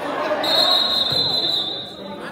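A referee's whistle blown in one long steady blast, about a second and a half, stopping the action as the wrestlers reach the edge of the mat. Voices murmur underneath, and there is a short thud from the mat midway.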